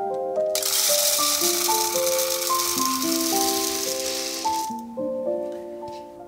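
Sunflower seed poured from a plastic cup into a clear plastic tube bird feeder: a dense rattling pour that starts about half a second in and lasts about four seconds, over background music.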